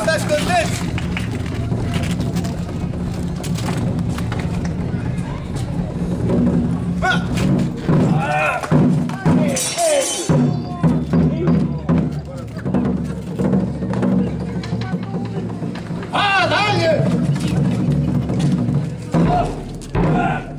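Live drums playing over a steady low drone, with loud shouts breaking in at about the middle and again about three-quarters of the way through.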